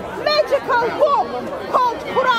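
Speech: people talking in conversation.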